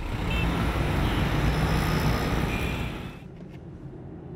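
Busy road traffic: a dense, steady rush of car and motorbike engines and tyres, with two short high beeps. A little after three seconds it drops sharply to a quieter low hum.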